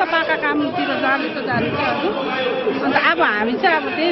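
A woman speaking into a handheld microphone, with other voices chattering around her.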